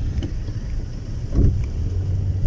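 Steady low rumble of a Nissan car, heard from inside its cabin.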